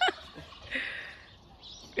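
A tom turkey gobbling once, a short rattling call about a second in.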